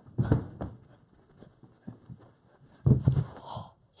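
Thumps and footfalls of a person running and jumping across furniture and floor while holding the camera, with handling bumps. A cluster of heavy thuds about three seconds in is the final crouched landing.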